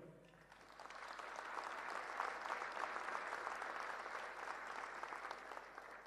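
Audience applauding, starting about a second in, holding steady, then dying away near the end.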